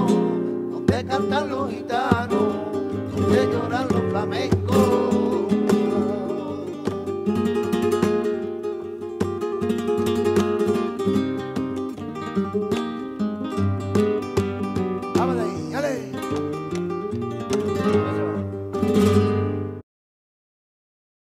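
Flamenco music: acoustic guitar playing with a wavering sung voice at times, cutting off abruptly near the end.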